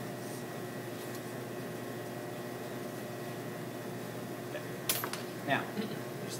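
Steady room hum with faint scraping of a flexible fish knife slicing along a salmon fillet on a cutting board, and a sharp click near the end.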